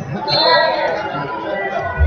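Overlapping voices of mat-side coaches and spectators talking and calling out in a large hall, louder about half a second in.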